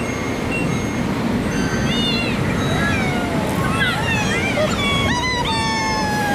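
Shinkansen bullet train pulling into the platform: a steady low rumble, with high-pitched voices calling out over it, busiest about four to five seconds in.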